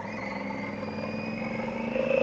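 Motorcycle engine running as the bike rides along at low speed, its pitch rising gently.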